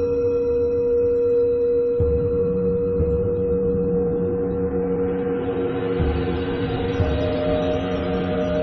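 Tibetan singing bowls ringing on in a long, layered sustained hum, one steady low tone strongest; a new, slightly higher tone joins about seven seconds in.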